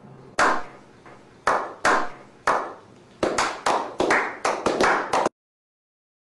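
A slow clap: single hand claps, each trailing a short echo, start about a second apart and speed up to about five a second, then cut off suddenly.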